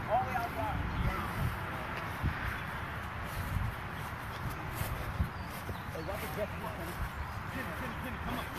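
Faint, indistinct voices of people out on an open field, a few calls near the start and again later, over steady outdoor background noise.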